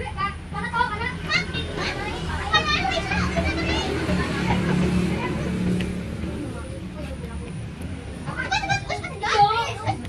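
Children's voices, chattering and calling in the background, over a steady low hum that is strongest around the middle. The voices fall away in the middle and come back strongly near the end.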